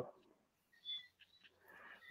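Near silence in a pause of conversation, with one faint short chirp about a second in and a faint breath-like hiss just before speech resumes.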